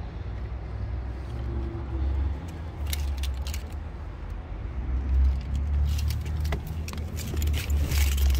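Handling and movement noise in a pickup truck's cab: a steady low rumble with scattered clicks and light rattles, busier in the second half.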